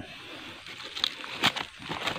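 Soft rustling of weeds and dry leaves being disturbed, with a few sharp light crackles about a second in and near the end.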